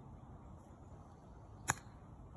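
A single sharp click near the end as a golf club strikes a ball in a short chip shot off grass.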